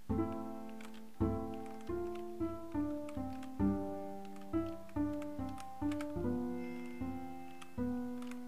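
8Dio Bazantar plucked patch, a sampled five-string acoustic bass with sympathetic strings: a slow melodic line of about a dozen single plucked notes, each ringing and fading before the next.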